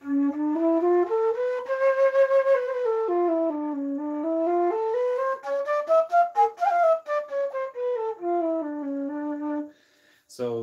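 Bamboo transverse flute in D playing its scale as a stepwise run of held notes. The run goes up from the low note and back down, climbs higher to a peak about six seconds in, then steps back down to the low note. It stops just before the end.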